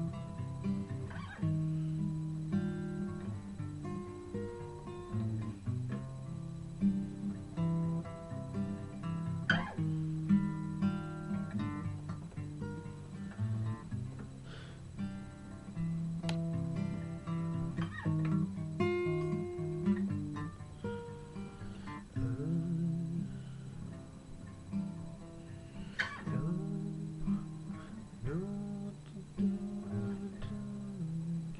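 Solo acoustic guitar playing an instrumental passage, with sustained chords and picked notes that change about every second or two.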